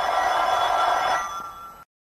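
Black desk telephone bell ringing: a single ring of about a second that fades away and then cuts off abruptly.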